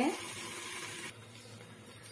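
Faint, steady hiss of beans and potatoes frying in mustard oil under a closed steel lid, growing quieter about a second in.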